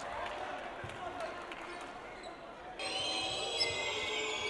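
Basketball game court sound: a ball dribbled on the hardwood floor over faint arena crowd noise. About three seconds in the sound changes at an edit, and high drawn-out squeaks come in.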